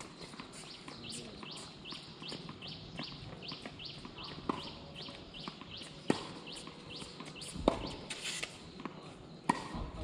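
Tennis balls struck by racquets in a rally: three sharp hits about a second and a half apart in the second half, with fainter pops earlier. Behind them a bird's short rising chirp repeats about three times a second.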